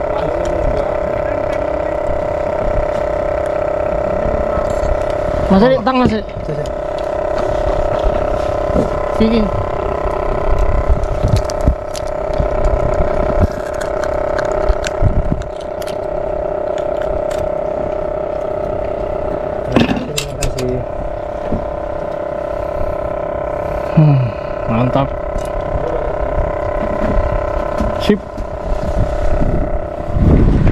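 Steady hum of a fishing boat's engine running, with a few brief voice sounds and clicks over it.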